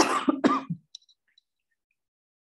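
A woman coughing twice in quick succession, harsh and throaty.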